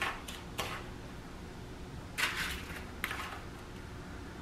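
Metal spoon scraping and clicking against a ceramic bowl while scooping buttery graham cracker crumbs: a few short scrapes and clicks, one slightly longer scrape about two seconds in.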